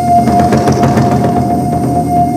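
Traditional Korean barrel drums beaten fast and densely by three drummers, the strokes running together into a continuous rumble. A steady high held note sounds over the drumming throughout.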